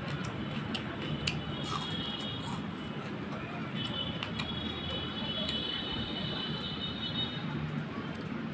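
Eating by hand: fingers working rice and curry on a plate and chewing, heard as scattered small clicks and smacks over a steady background noise. A thin high steady tone sounds from about four seconds in to about seven seconds.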